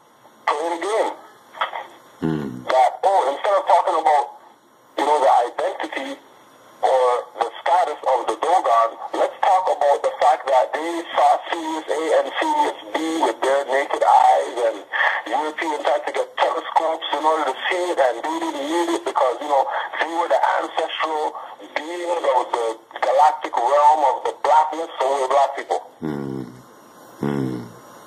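Continuous talking that sounds thin, as if played through a radio or phone line, with only brief pauses.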